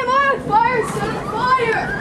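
High-pitched voices exclaiming and calling out, "boy, boy" at the start.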